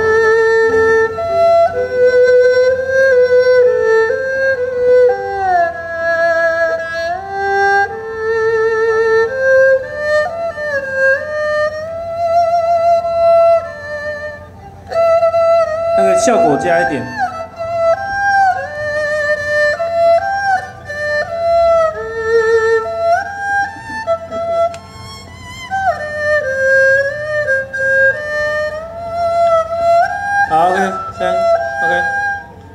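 Erhu playing a melody through the stage speakers during a sound check, gliding between notes with strong vibrato. About sixteen seconds in, a quick sweep falls steeply in pitch.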